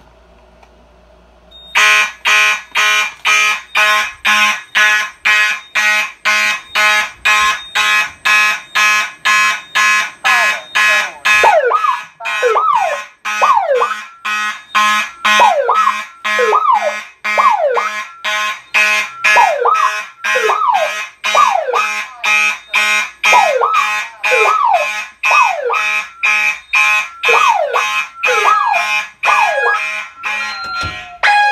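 Fire alarm horns sounding in a rapid, even pulse, set off by a manual pull station. From about ten seconds in, a second tone joins, sweeping down in pitch over and over.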